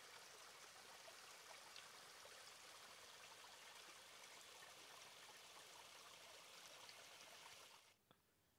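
A small mountain stream trickling and splashing over a rock slab into a shallow pool, faint and steady, stopping abruptly near the end.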